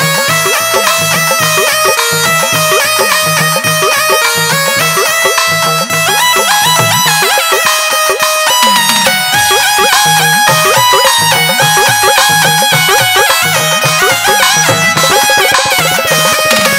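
Instrumental music: an electronic keyboard playing a sustained melody over a repeating drum beat.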